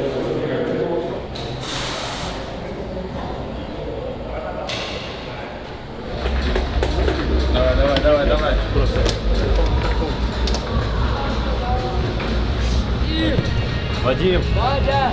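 Indistinct voices with music in the background. About six seconds in, a deep, steady low rumble sets in, with pitched sounds rising and falling above it.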